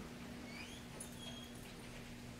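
Quiet room tone with a steady low hum and a few faint, brief high-pitched squeaks.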